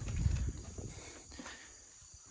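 A few soft footsteps with a low rumble of camera handling, fading to quiet near the end.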